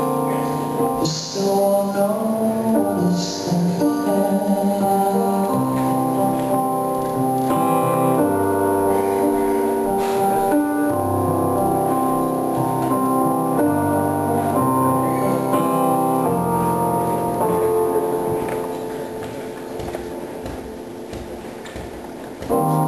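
Live solo song: a stage keyboard played in slow, sustained piano chords with a male voice singing. The music grows softer over the last few seconds.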